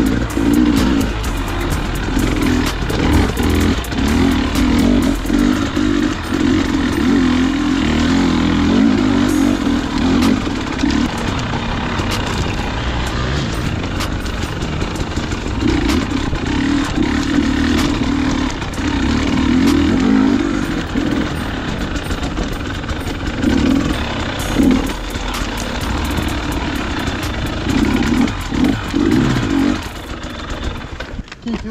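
Dirt bike engine riding rough forest trail, the revs rising and falling with the throttle, with knocks and rattles from the bike over rocks and roots.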